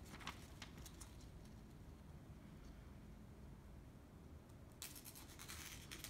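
Near silence with a few faint ticks of paper being handled, then about a second of faint soft hiss near the end as a very sharp knife push-cuts straight down through thin phonebook paper.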